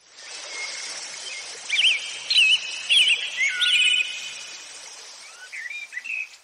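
Birds chirping over a steady hiss of outdoor ambience that fades in at the start, with a run of quick rising-and-falling chirps about two to four seconds in.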